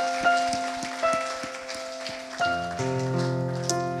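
Worship keyboard playing slow, held chords, with a deeper chord coming in about two and a half seconds in, under a congregation's applause.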